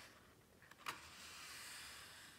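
A glossy page of a large hardcover book being lifted at its edge: a sharp paper snap just under a second in, then a soft rustle of paper.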